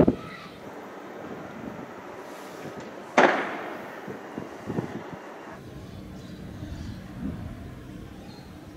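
A sharp bang at the very start, then a louder single bang with a ringing echo about three seconds in, followed by a few fainter pops; the bangs of a street clash, from a blast or a launched round.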